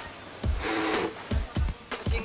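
Electronic background music with a low drum beat and a brief hiss about half a second in.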